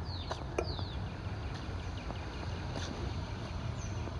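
Outdoor street ambience: small birds chirping in short, high, falling notes, a few around half a second in and another near the end, over a steady low rumble, with a few light taps.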